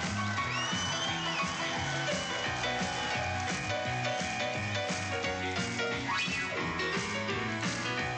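Fifties-style rock and roll played by a band on a grand piano, with a steady beat and no singing. A high gliding line runs through the first couple of seconds, and a quick rising sweep comes about six seconds in.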